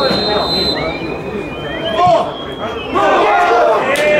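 Footballers' voices shouting across the pitch as play goes into the penalty area, loudest about two seconds in and again near the end. A short, steady referee's whistle sounds at the very start.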